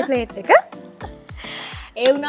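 A woman's short squeal rising sharply in pitch about half a second in, then a soft breathy hiss lasting about half a second, over background music with a steady beat.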